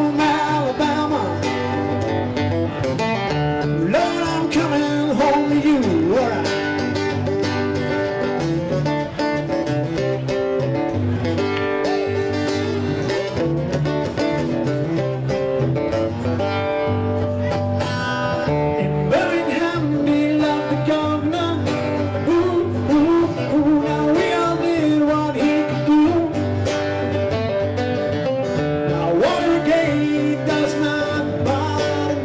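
Country-style band music: guitar over a steady bass line, with a singer.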